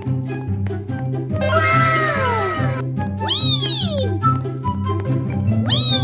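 Cat meows laid over background music with a repeating bass line: one long, drawn-out falling meow about a second and a half in, a shorter rising-and-falling meow around three seconds in, and another starting near the end.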